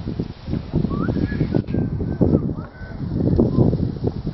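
Wind buffeting the microphone in uneven gusts, with a few short bird calls over it.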